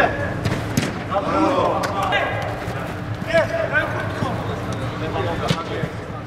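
Players shouting and calling to each other during a five-a-side football match, over a few sharp thuds of the ball being kicked on artificial turf.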